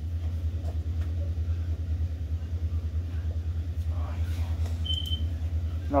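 A steady low hum with a brief high-pitched beep about five seconds in.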